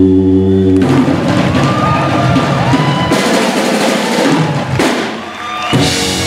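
Live doo-wop vocal group and backing band ending a song: the singers' held closing chord breaks off about a second in, then a drum roll with crashing cymbals. Near the end the band comes back in on a sustained chord.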